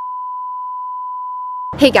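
Colour-bar test tone: one steady, high-pitched beep at a single pitch that cuts off suddenly near the end, where a woman's voice starts.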